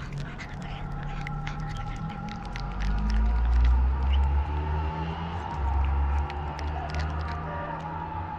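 A cat crunching dry kibble: quick, irregular little cracks of chewing. Under it, a low rumble swells in the middle and then eases.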